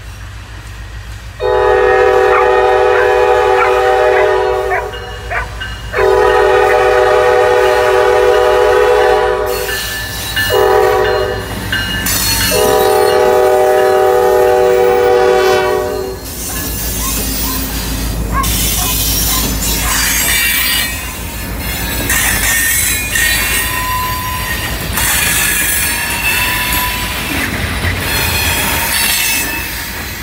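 Diesel locomotive horn blowing the grade-crossing signal, long, long, short, long, as the train approaches. The locomotive and freight cars then roll past with loud wheel noise and thin, intermittent wheel squeals.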